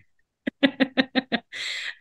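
A woman laughing: a quick, even run of short laughs, then a breathy intake of breath near the end.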